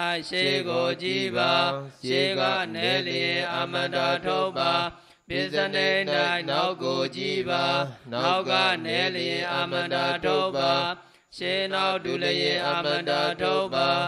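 A male voice chanting Pali scripture in a steady sing-song recitation, in phrases of about three seconds separated by brief pauses for breath.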